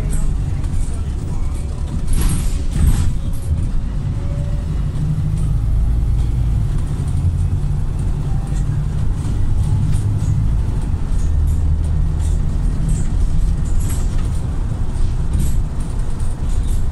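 Volvo B5TL double-decker bus driving, heard from inside the lower deck: a steady low engine and driveline drone that rises and falls as the bus pulls away and slows. Light rattles from the fittings run through it, with a louder clatter about two seconds in.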